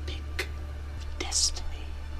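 Whispered speech with sharp hissing 's' sounds over a low steady hum.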